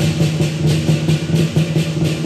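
Live lion dance accompaniment: a large Chinese lion drum beaten in a fast, steady rhythm with clashing cymbals and gong over it.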